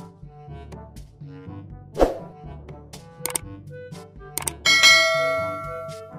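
Quiet background music under sound effects from an animated subscribe end screen: a sharp hit about two seconds in, a few clicks, then a loud bell-like ding near the end that rings on and fades.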